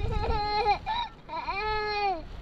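A young child crying in two long, high-pitched wails, each holding its pitch and dropping at the end.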